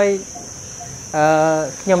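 Steady, high-pitched drone of insects running unbroken beneath a man's speech.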